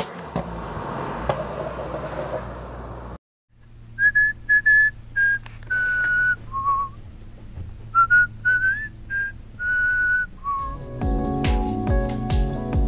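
A whistled melody of clear single notes, some sliding up, over a soft low drone, after about three seconds of steady outdoor noise and a brief silence. About eleven seconds in, a fuller music track with a beat comes in.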